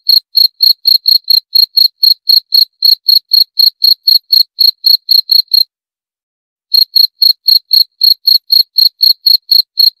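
A cricket chirping in a fast, even train of short, high-pitched pulses, about four to five a second. The chirping breaks off for about a second just past the middle, then resumes.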